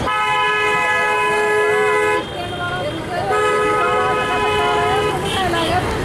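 A vehicle horn sounding two long, steady blasts of about two seconds each, a second apart. People are talking underneath.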